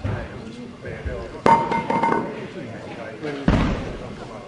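A weight plate is set down on a hard gym floor: a sharp metallic clank with a brief ringing tone about a second and a half in, then a duller thud near the end.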